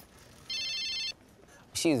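A single steady electronic tone from a mobile phone, lasting just over half a second and starting about half a second in.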